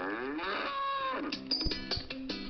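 A long moo, rising, holding and then falling in pitch, played through a tablet's speaker as a sound effect in a radio programme. A few plucked musical notes follow in the last half second.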